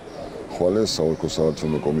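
A man's voice speaking in an interview; speech is the only sound that stands out.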